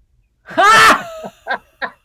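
A person bursting into loud laughter at a joke's punchline: a high-pitched whoop about half a second in, then short breathy laughs about three a second.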